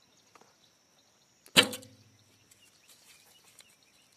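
Recurve bow loosed once about one and a half seconds in: a sharp snap of the released string followed by a brief low twang as the bow rings out.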